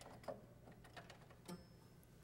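A few faint, light clicks as the jacks of a 1972 Frank Hubbard harpsichord are touched and shifted by hand.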